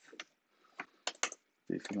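Computer keyboard typing: about half a dozen separate, quick keystroke clicks as a short colour value is entered.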